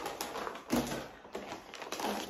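Plastic food packets and a paper grocery bag crinkling and rustling as they are handled and rummaged through, with a louder rustle a little under a second in.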